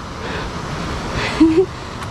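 A tired hiker's heavy breathing close to a head-mounted camera, with a short grunt about a second and a half in, over the steady rush of a mountain river.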